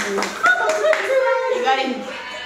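Several people clapping their hands at an uneven pace, with women's voices calling out over the claps.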